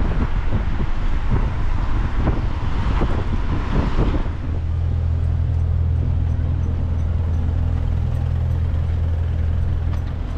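Outdoor street noise with road traffic and wind buffeting the microphone, giving way about four seconds in to a steady low hum.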